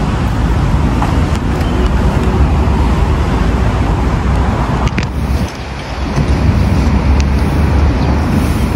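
Steady city road traffic noise, dipping briefly about five and a half seconds in.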